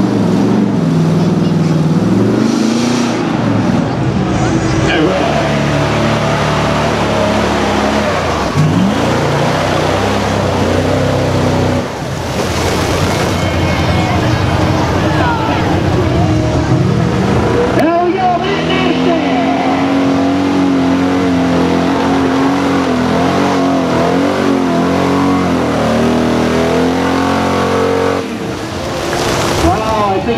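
Engines of off-road trucks revving hard as they push through a deep mud pit, the pitch rising and falling with the throttle. The sound changes abruptly a little past halfway, where a different truck's engine takes over.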